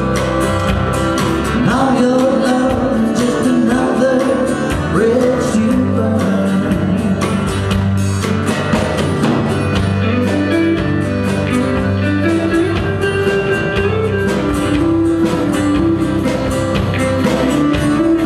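Live country band playing: acoustic guitars, electric guitar, accordion and drums together in a steady groove.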